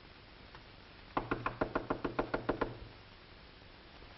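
Rapid knocking on a door: a quick run of about a dozen raps, starting about a second in and lasting about a second and a half.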